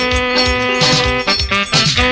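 Live axé band music from a trio elétrico: an instrumental passage of held melody notes over a steady drum beat of about four hits a second.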